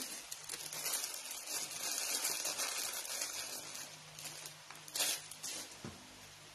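Soft rustling of hands handling a bundle of small craft flower stamens, with a brief louder rustle about five seconds in.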